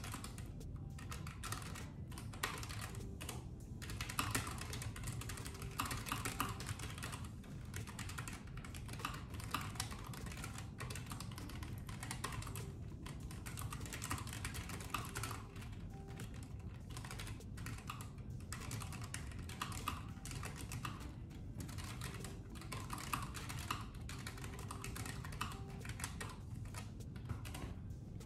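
Computer keyboard being typed on: quick runs of keystrokes broken by short pauses.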